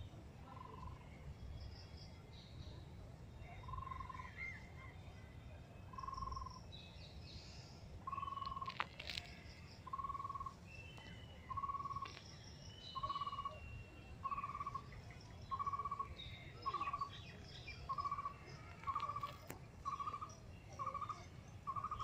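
A bird repeating one short note over and over, slowly at first and then faster and faster, until the calls come less than a second apart. Other birds chirp faintly over a low steady rumble of background noise.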